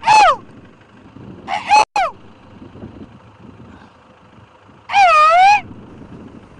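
Sheep bleating in a grazing flock: three separate bleats, one right at the start, one about two seconds in, and one near the end, with low open-field background between them.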